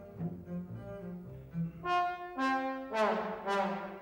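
Orchestral music: a double bass plays short, detached low notes, then a trombone comes in with four loud, accented notes about half a second apart.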